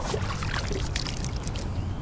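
Water lapping and trickling against the side of a small fishing boat, over a steady low rumble, with a few faint knocks.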